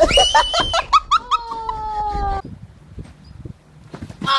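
Loud high-pitched cries: a sharp cry, then several drawn-out wails that each slide up and then fall slightly in pitch, over low rumbling handling noise. They stop about two and a half seconds in.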